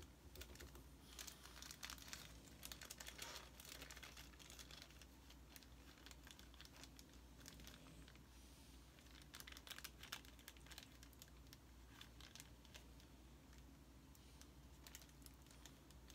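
Faint crinkling and rustling of a small clear plastic bag as it is handled and opened, in scattered light clicks and short rustles.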